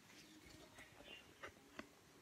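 Near silence: room tone with a few faint, short clicks in the second half.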